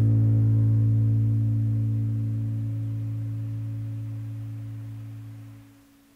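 The last chord of a grunge/post-punk song, distorted electric guitar and bass, left ringing out. It holds a steady low pitch and slowly fades, then drops away near the end.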